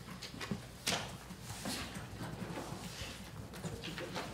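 Papers rustling and small scattered clicks and knocks as sheets are handled on meeting tables, the sharpest click about a second in.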